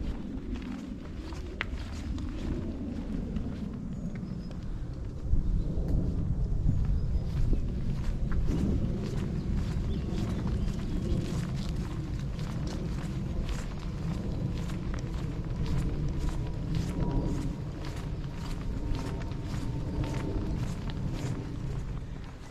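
A walker's footsteps on an earth woodland path, with low wind noise on the microphone.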